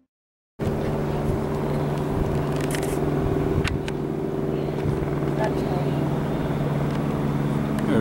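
Steady low mechanical hum of running machinery, cutting in abruptly about half a second in, with a couple of faint clicks.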